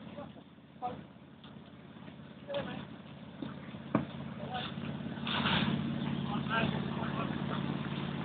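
A fire engine running steadily, its engine hum growing louder from about five seconds in, with faint distant shouts and a single click just before.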